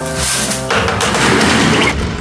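Background music, and from about half a second in a loud rush of dry sand sliding off a plastic dustpan into a plastic bucket, lasting about a second.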